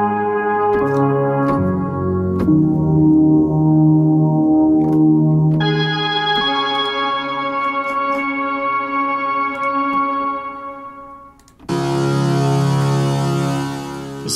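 ORBIT software synthesizer playing held notes built from its Fiddlist wave, shifting in pitch a few times early on and turning brighter about halfway through. It fades out near 11 s, and a brighter, buzzier held tone from the Buzzy Doepfer wave starts about a second later.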